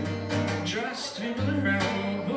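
Acoustic guitar strummed in a live song, with a man singing over it.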